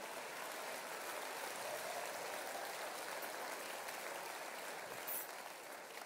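Theatre audience applauding, swelling over the first couple of seconds and slowly dying away toward the end.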